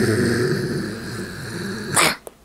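A deep, growling demonic roar: one long sound that starts suddenly and slowly fades, ending in a short loud burst.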